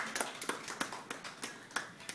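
Scattered hand claps from a few people, irregular and fading out.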